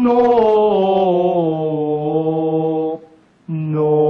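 Male voices singing a cappella in a slow, chant-like style: a long held note that steps down in pitch over about three seconds, a brief break, then a new low note held.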